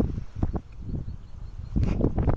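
Wind buffeting the microphone in uneven gusts, with a few short bumps.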